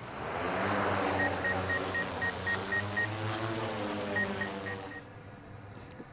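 Multirotor drone's propellers spinning up as it lifts off: a loud whir whose pitch rises and falls back. A quick run of high beeps, about four a second, sounds over it twice, and the whole sound fades away about five seconds in.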